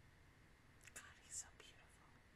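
A woman whispering briefly and softly into a close microphone, a hissy patch of about a second starting a little under a second in, over near silence.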